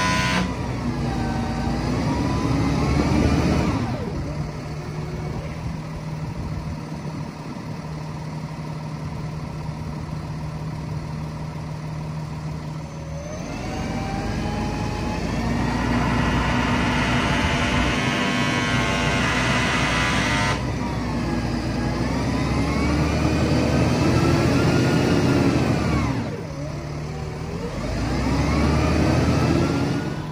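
Hino hooklift truck's diesel engine revving up and dropping back several times as it drives the hydraulic hook arm against an overloaded 15-yard dumpster of dirt, holding high revs for stretches of several seconds. The load is too heavy for the truck to lift.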